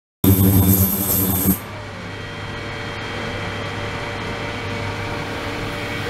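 Ultrasonic tank and liquid-circulation pump running. A loud mains-pitched buzz lasts about the first second and a half, then cuts off. What remains is a quieter steady hum with a faint whine, and the loud buzz comes back right at the end.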